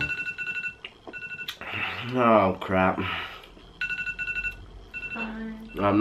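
iPhone timer alarm going off, signalling that the two-minute timer has run out: short groups of rapid high two-pitch beeps that repeat several times, with a man's voice in between.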